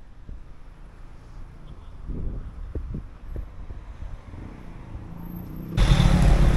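Street traffic: a car passing on the road, with a low wind rumble on the microphone that turns much louder suddenly near the end.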